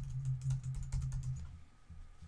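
Typing on a computer keyboard: a quick run of keystrokes that thins out near the end.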